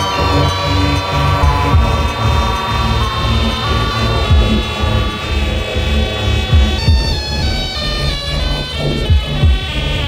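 Electronic synthesizer music in the style of late-'70s/early-'80s European horror-film soundtracks, made with a Commodore 64 (MSSIAH cartridge) and an Ensoniq SQ80. Stepping, sequenced high synth notes play over a low pulsing bass.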